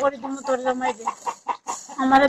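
A woman's tearful, wailing voice: one drawn-out held cry in the first second, then shorter broken cries.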